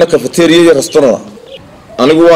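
A dove cooing under a man's talking; the talking stops a little past a second in and the rest is quieter.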